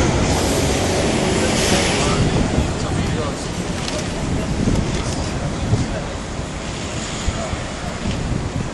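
City street noise: a steady rush of passing traffic, fullest in the first couple of seconds, with wind buffeting the microphone.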